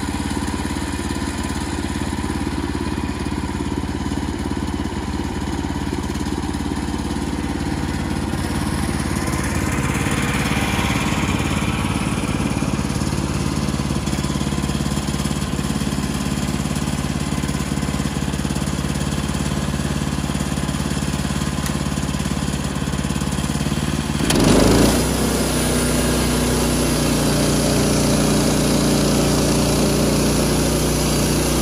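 Gasoline engine of a Woodland Mills portable bandsaw sawmill running steadily. Near the end it surges briefly and then settles at a higher, louder running speed.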